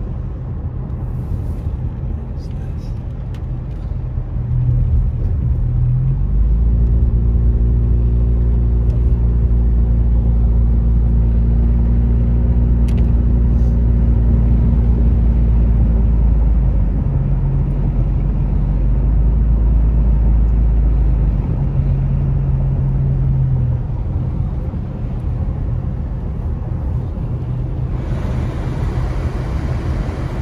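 Car engine droning with the defroster fan blowing and tyres on a wet road, heard from inside the cabin. The engine note grows louder about five seconds in, with a steady pitched hum from about six to seventeen seconds in, and drops back about twenty-four seconds in.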